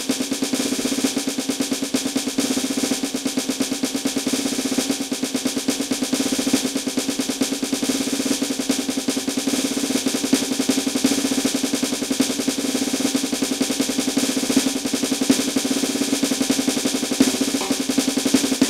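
Electronic drum kit's snare pad played in a fast, even stream of sticked strokes: a roll exercise of 16th and 32nd notes mixing single and double strokes, played for an even sound with no accents.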